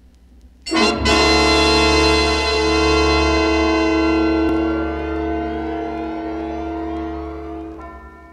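A sudden loud orchestral chord with brass to the fore comes in under a second in. It is held and slowly dies away over several seconds.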